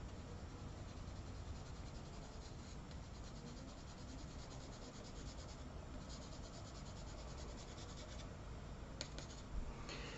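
Pastel scratching and rubbing on drawing paper in quick, faint strokes, busiest from about three to eight seconds in, with a single click near the end.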